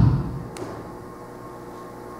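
The end of a sharply spoken word fading out in the reverberation of a large hall, then a pause with a steady low hum and one soft click about half a second in.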